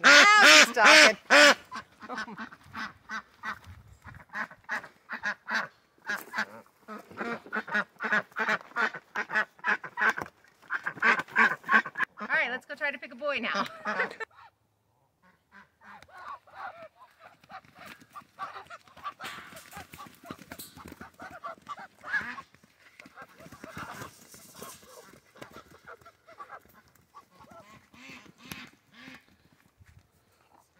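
White domestic duck hen quacking loudly and repeatedly: a burst of loud quacks in the first couple of seconds, then a long run of calls, with quieter quacking from the flock after a short gap near the middle. A loud quack like this is the mark of a female duck.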